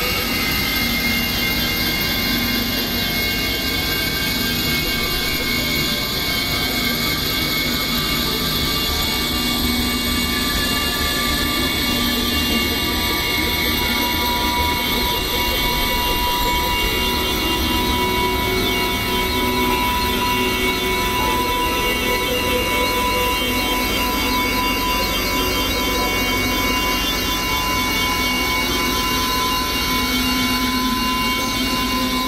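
Dense experimental synthesizer drone: several held electronic tones at different pitches layered over a steady, noisy rumbling wash, with no beat and no breaks. Some tones slowly fade in and out while the overall level stays constant.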